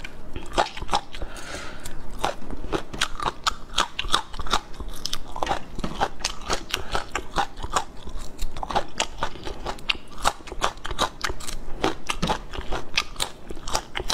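Close-miked crunching and chewing of whole raw red chili peppers: a dense, steady run of crisp crunches, several a second.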